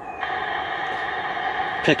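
Static hiss from the small built-in speaker of a hand-crank emergency weather radio lamp being tuned between stations, starting a moment in and holding steady.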